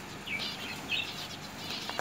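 Small caged finches chirping: a few short, high chirps scattered through the moment.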